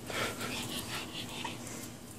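A pug's noisy breathing up close: a rapid run of short, rasping breaths over the first second and a half.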